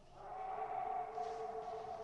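A long, steady eerie tone from the film's soundtrack: two pitches held together, fading in about a third of a second in and sustained.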